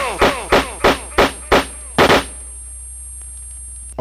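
Turntable scratching: a short sample cut on vinyl in a quick, uneven run of about seven sharp stabs, each dropping in pitch, over the first two seconds. The music then drops out, leaving only a low steady hum.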